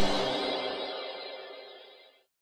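Music of a short channel-intro jingle ringing out and fading away to silence, its low notes dropping out about half a second in.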